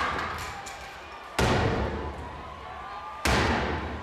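Heavy axe blows smashing into a casket: two loud strikes about two seconds apart, each dying away in a long echo.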